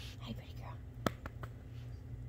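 A soft, whispered voice saying "girl", then a single sharp click about a second in and a few fainter ticks, over a low steady hum.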